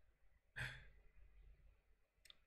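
A man's single short, breathy sigh about half a second in; otherwise near silence.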